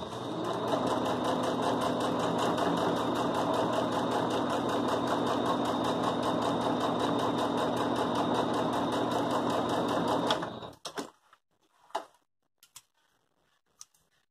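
Domestic electric sewing machine stitching fabric scraps onto thick quilt batting, running at a steady speed with an even, rapid stitch rhythm for about ten seconds, then stopping. A few small clicks follow.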